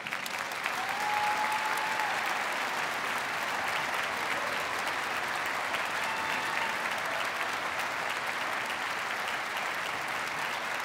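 Concert-hall audience applauding steadily at the end of an orchestral performance, the clapping starting just as the orchestra's final chord dies away.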